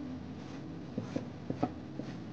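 A marking tool drawing a line on cotton fabric laid along a tape measure: a few short scratching strokes, a cluster about a second in and another shortly after, over a faint low steady hum.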